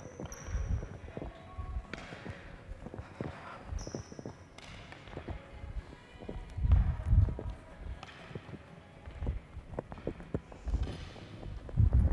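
Tennis balls and racket frames tapping and knocking on a hardwood gym floor as children roll, trap and hit balls back, in scattered irregular clicks with a few heavier thuds. Two brief high squeaks.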